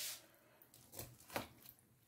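Large kitchen knife cutting through monkfish flesh and bone on a plastic cutting board: faint, with two short crunching clicks about a second in.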